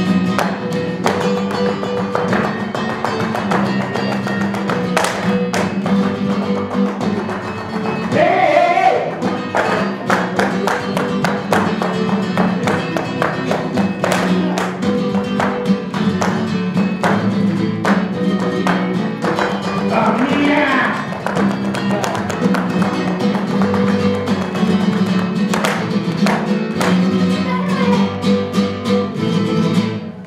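Live flamenco: acoustic guitar playing throughout, over a dense run of sharp heel-and-toe stamps from the dancer's footwork. A voice rises briefly twice, about a quarter of the way in and again about two-thirds in.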